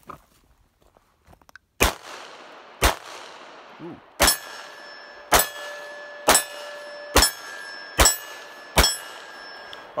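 Eight shots from a CZ-27 pistol in .32 ACP, fired in an uneven string about a second apart. Between shots a steel plate target rings with a steady tone after hits.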